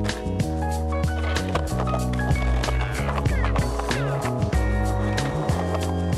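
Music playing throughout, with a skateboard over it: wheels rolling on concrete and sharp clacks of the board popping and landing.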